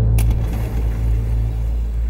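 Low, steady rumbling drone of a suspenseful drama score, with a brief bright hiss just after it begins.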